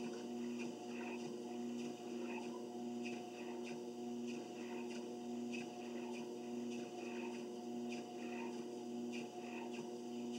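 Treadmill running with a steady motor hum, and footsteps landing on the moving belt in an even rhythm, a little under two a second.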